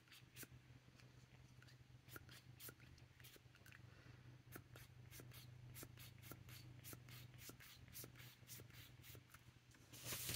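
Faint light scratching and small ticks of a fine tip drawn across paper, irregular and scattered, over a steady low hum.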